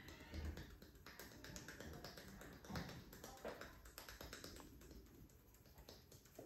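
Faint close-up sounds of a hand head massage: fingertips rubbing and pressing over the forehead and hairline, with many soft, irregular taps and clicks.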